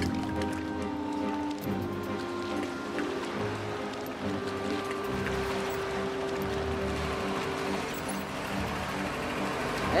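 Background film music with slow, long held notes, one note held for several seconds in the middle.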